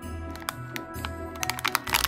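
Soft background music over a run of small clicks and crinkles from hands handling a plastic toy box and the foil-wrapped packets inside it.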